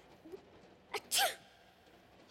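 A young girl sneezes once, sharply, about a second in; she is sneezing from the cold.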